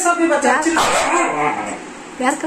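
Siberian husky vocalising in its speech-like 'talking' way: two or three drawn-out yowls that rise and fall in pitch, answering being asked what it wants.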